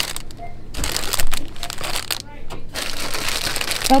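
Plastic packaging crinkling as it is handled, in two spells of rustling, about a second in and again near the end.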